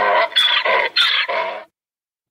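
A donkey braying, played as a sound-effect sting: a quick run of short, pitched braying calls that stops shortly before the end.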